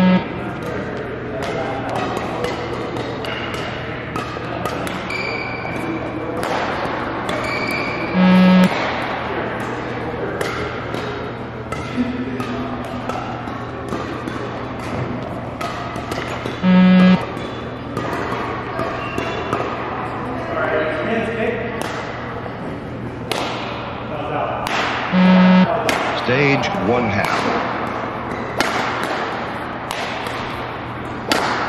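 Beep-test (20 m shuttle run) recording sounding its pacing beep four times, about every eight and a half seconds, each beep short and loud, over background music. Running footsteps thud on the court floor between the beeps.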